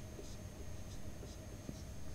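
Marker pen writing on a whiteboard: a few short, faint strokes as a word is written out.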